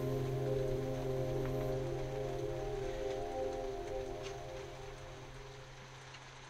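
Background music of sustained, ambient held tones over a low drone, fading out toward the end.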